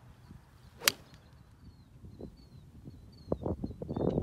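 A 7 iron striking a golf ball off the turf about a second in: one sharp click. Faint bird chirps repeat throughout, and low rustling knocks come near the end.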